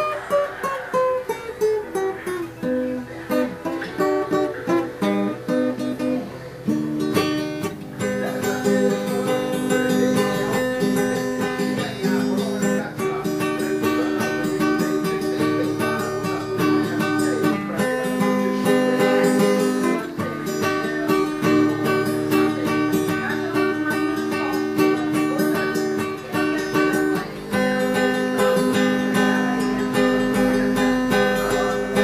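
Classical guitar played solo in a caipira style: picked single-note runs stepping downward for the first several seconds, then steady rhythmic strummed chords from about seven seconds in.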